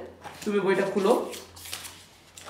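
Pages of a printed book being flipped by hand, a quick papery rustle that is densest in the second half.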